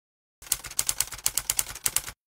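Typing sound effect: a quick, irregular run of sharp key clicks, about seven or eight a second, starting about half a second in.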